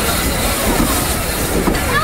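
Train of passenger coaches rolling past at close range, steel wheels running over the rail.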